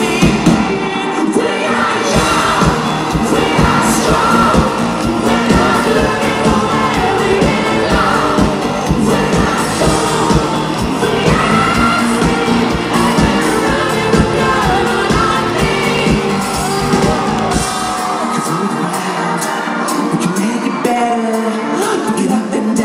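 Live pop band performing, recorded from the audience: a male lead singer with a backing singer over drums, bass guitar and guitar. Near the end the drums and bass drop out, leaving the voices and lighter instruments.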